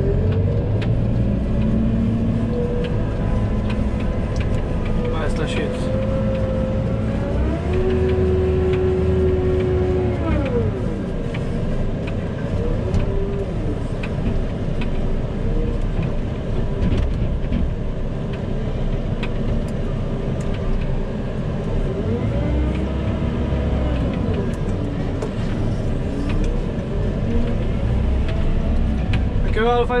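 JCB telehandler's diesel engine heard from inside the cab, running steadily and revving up and back down twice as the machine works.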